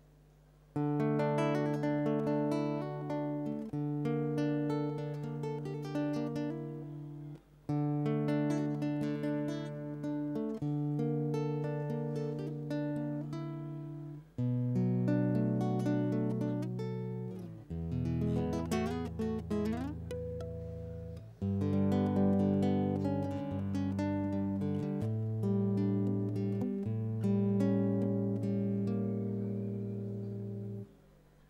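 Two acoustic guitars playing the instrumental introduction to a zamba, plucked notes and chords in phrases separated by short breaks. The playing begins about a second in.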